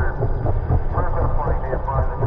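Muffled voices over a steady low rumble.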